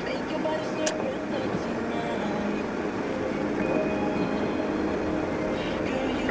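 Inside a moving car on a snow-covered road: a steady rumble of tyres and engine, with voices and music playing underneath.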